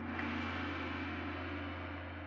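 Intro sting for the title card: one deep, sustained low tone with a hissy wash above it, starting just before the beat-driven music cuts off and slowly fading.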